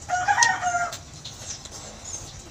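A chicken calls once from the background: a single pitched call lasting just under a second, shortly after the start.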